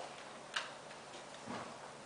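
Faint clicks from a toddler's fingers pressing the buttons of a desk telephone's keypad: one sharp click about half a second in, a softer one near the end.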